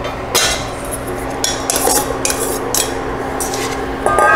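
Metal tongs clinking and scraping against a stainless steel pan as cannellini beans are added and stirred into wilted escarole, with a string of separate clinks.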